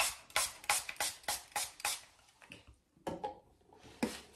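Small finger-pump spray bottle misting the face: about eight quick sprays in the first two seconds.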